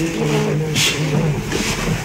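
Several people's voices overlapping in a crowd, some drawn out into held, wavering tones, with a sharp hiss a little under a second in.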